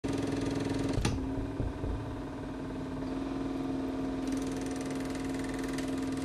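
Film projector running: a rapid, even clatter over a steady hum, with a sharp click about a second in.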